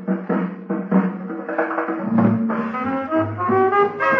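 Swing-era dance orchestra playing an instrumental stretch of a 1940 foxtrot, from a 78 rpm shellac record.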